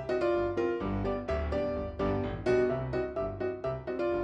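Background music: a piano tune with a bass line, its notes struck in a steady rhythm.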